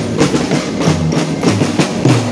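Marching drum band playing: multi-tom tenor drums, snare drums and bass drum beating a steady rhythm of about four strokes a second.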